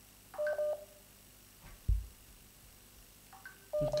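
Phone call-line signal tones: two short electronic multi-tone beeps about three seconds apart, with a single thump between them.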